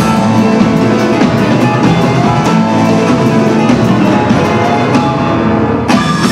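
Live band music: a grand piano played over a drum kit with a steady beat, loud throughout, closing with a loud accented hit at the very end.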